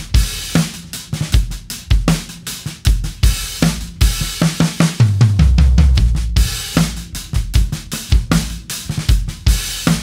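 Drum kit played in a steady groove, with a pair of 18-inch crash cymbals used as hi-hats over snare and bass drum. About halfway through, the cymbal wash swells and rings for a couple of seconds over low drum hits.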